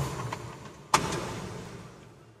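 Two sudden knocks about a second apart, each trailing off in a fading rustle, with a few faint clicks between them.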